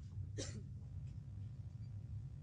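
One short throat sound, like a hiccup, about half a second in, over a steady low room hum.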